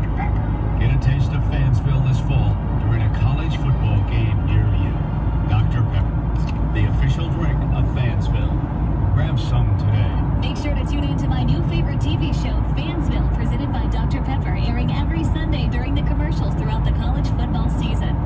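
Steady road and engine rumble inside a moving car's cabin at highway speed, with indistinct voices from the car radio over it.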